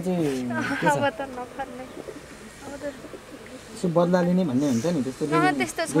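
A woman's voice talking in short stretches, in the first second and again from about four seconds in, with a quieter pause between.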